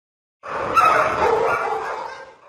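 A dog vocalising in one drawn-out, unbroken sound that starts about half a second in and fades out at the end.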